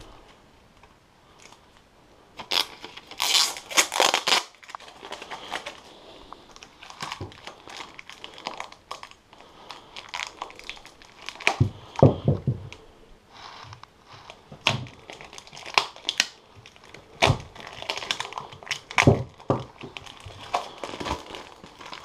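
Clear plastic wrapping and tape crinkling and tearing as they are pulled off a new axe head, in irregular crackly bursts that start about two seconds in and are loudest soon after.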